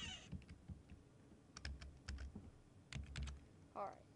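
Keys tapped on a computer keyboard in a few short groups of clicks as a number is typed into a field.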